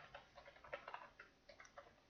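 Faint, irregular clicking of a computer keyboard being typed on.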